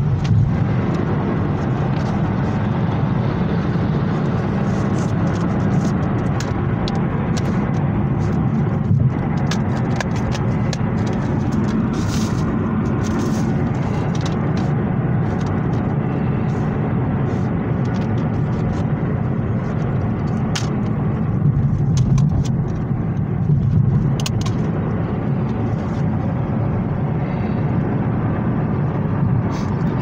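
Steady low rumble of a car cabin on the move, with scattered light clicks and taps of plastic DVD cases being handled.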